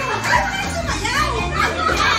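A group of women shouting and cheering excitedly over each other, with music and a steady bass beat underneath.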